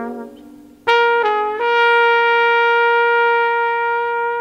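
Jazz ballad near its close: a descending phrase dies away, then about a second in a horn comes in sharply, moves through a couple of short notes and settles on one long held note.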